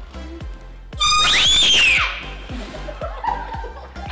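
A girl's scream, about a second long, starting about a second in, its pitch rising and then falling, over background music with a steady beat.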